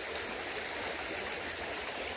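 Shallow river flowing over rocks: a steady rush of water.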